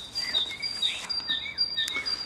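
Outdoor songbirds chirping: a run of short, high notes repeating a few times a second.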